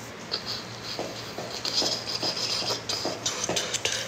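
Handling noise close to the microphone: a run of small, irregular clicks and rustles.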